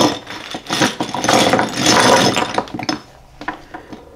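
Plastic chess pieces tipped out of a cloth drawstring bag onto a vinyl roll-up board, clattering against each other and the board for about two seconds.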